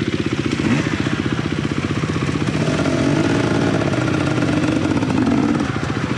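Dirt bike engine running at low revs while being ridden along a trail; the revs lift a little about halfway through and ease again near the end.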